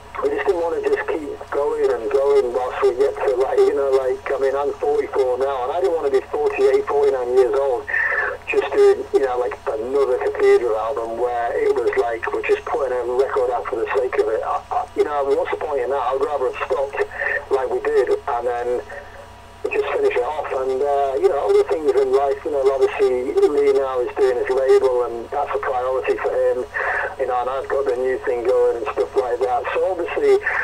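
Speech only: a man talking on and on with short pauses, his voice thin and narrow in range as over a phone or internet call line.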